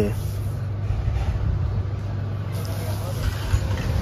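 A steady low hum with a low rumble beneath it, running unchanged throughout.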